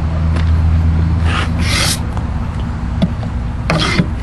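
An engine running steadily with a low hum. A short hiss or rustle comes between about one and two seconds in, and a brief sharp sound comes near the end.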